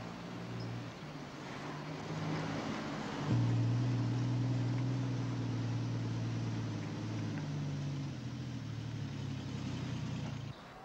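Car engine running steadily as the car drives, heard from inside the cabin, with a low hum and road noise that jump louder about three seconds in.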